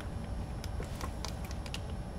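Steady low background hum with a few faint light clicks scattered through it.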